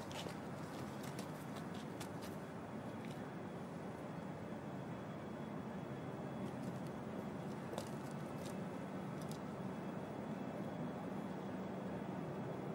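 Faint, steady outdoor background noise with a low hum that grows slightly stronger toward the end and a few soft ticks.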